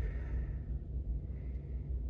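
Low, steady background rumble inside the truck cab, with no distinct sound standing out.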